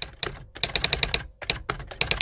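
Computer keyboard typing sound effect: rapid key clicks, about ten a second, in two quick runs with a short pause between them, timed to on-screen text being typed out.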